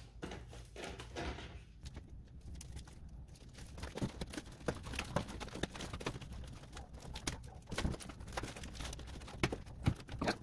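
Flexible aluminium foil dryer vent duct crinkling and crackling as it is handled, pushed and twisted onto the dryer's metal exhaust collar: irregular small clicks and rustles that grow busier partway through.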